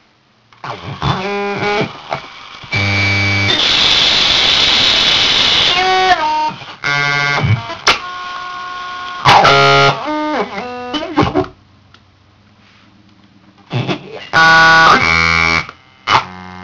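Circuit-bent Furby glitching: its voice samples break into stuttering, looping electronic fragments with stepping and gliding pitches and a stretch of harsh digital noise. The sound stops for about two seconds near the end, then starts again in short bursts.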